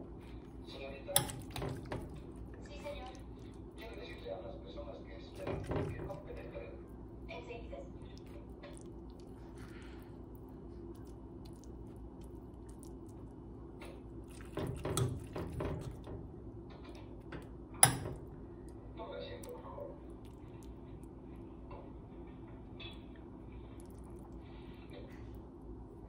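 A metal spoon scooping filling out of a stainless steel pot, with scattered scrapes and knocks against the pot; the sharpest clink comes about 18 seconds in. A steady low hum runs underneath.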